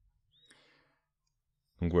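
Near silence, with a faint short click and rustle about half a second in, then a man starts speaking near the end.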